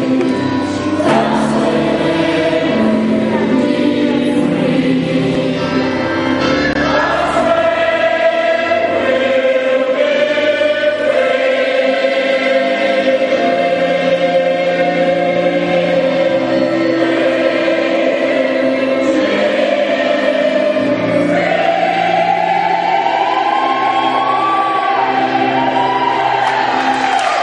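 A choir singing together in parts: a sustained melody over lower voices, with the tune climbing and falling back near the end.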